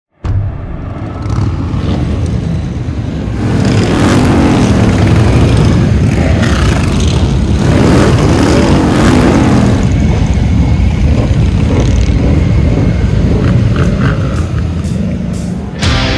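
A group of cruiser motorcycles riding slowly past, their engines rumbling and revving up and down in pitch, growing louder a few seconds in. A few sharp drum hits come in near the end.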